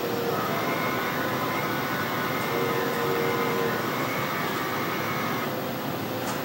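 Steady whooshing machine noise with faint whining tones that fade in and out.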